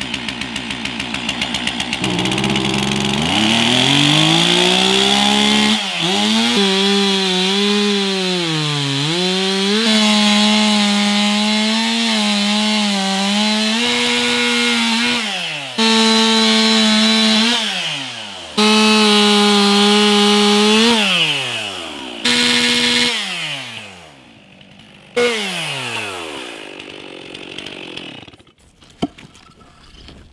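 Gas chainsaw revving up and cutting through a log, its engine pitch dipping as the chain bites. Between cuts the throttle is let off several times and the engine falls back toward idle, and it is quieter over the last few seconds.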